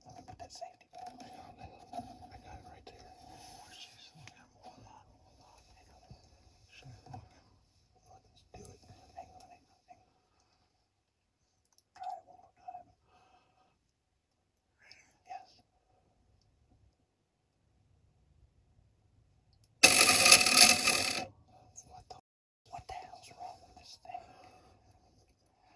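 Hushed whispering between hunters. About twenty seconds in comes a sudden, loud noise that lasts a little over a second.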